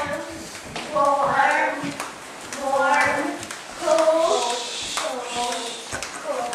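Speech only: several long, drawn-out called words from a woman and children, pitch sliding up and down.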